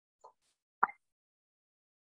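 A faint tick, then a single sharp click just under a second in.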